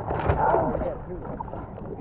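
A hooked bluefin tuna thrashing at the boat's side, throwing up a heavy splash of water that is loudest at the start and dies away within about a second, with voices over it.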